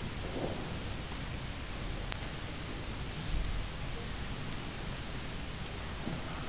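Steady hiss of a large hall's room tone, picked up through the ceremony's microphones, with a faint click about two seconds in and a soft low thump a little after three seconds.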